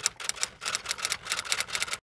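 Typewriter keystroke sound effect: a rapid run of sharp clicks, about seven or eight a second, laid under a heading typing itself out on a title card; it stops abruptly.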